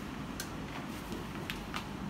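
A few light, sharp clicks of wall power switches being switched off, over a steady low room hum.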